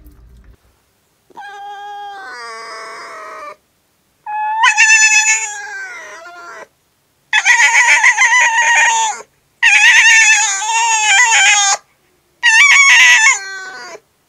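A canine yowling in five long, high, wavering calls, each lasting about two seconds, with short breaks between them.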